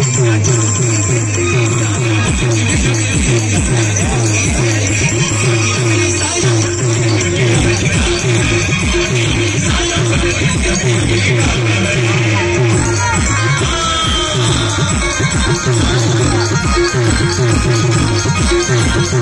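Loud timli dance music from a wedding band, with a fast, steady beat and a repeating melody.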